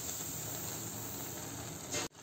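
Faint, steady sizzling hiss of grated-carrot halwa cooking in a pan on low heat, its milk already reduced.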